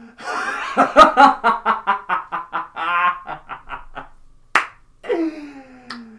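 A man laughing hard in a rapid run of "ha"s, about five a second, for some four seconds, then a single sharp clap and a drawn-out vocal sound falling in pitch.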